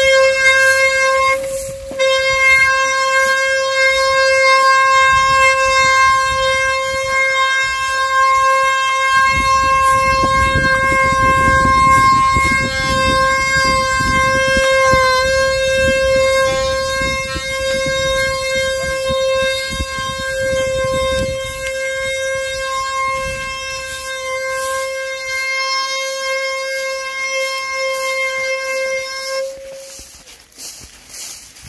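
Traditional Brazilian wooden ox cart (carro de boi) singing as it rolls: the turning wooden axle rubbing in its wooden bearing blocks gives a loud, steady, horn-like whine at one pitch. It holds almost unbroken, with a short break about two seconds in, and stops just before the end.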